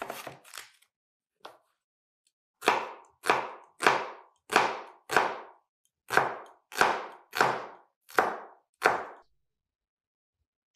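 Kitchen knife chopping red onion on a wooden cutting board: a few light knocks, then a steady run of about ten chops, roughly one and a half a second.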